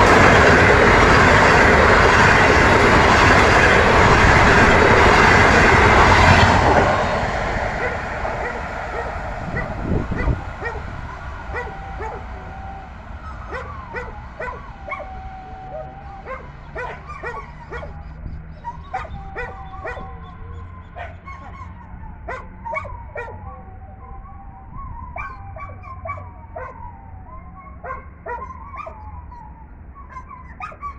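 Passenger coaches of a diesel-hauled train rolling past close by, wheels running on the rails, loud until about six seconds in and then fading away as the train recedes. Through the rest of the time a dog barks and yips again and again.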